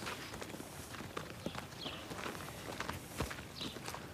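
Soft, irregular hoof steps of a donkey walking on dry dirt ground, with a few sharper knocks among them; the donkey is judged to be moving poorly on its left hind leg.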